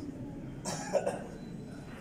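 A person coughing once, a short burst about a second in, over a low background murmur.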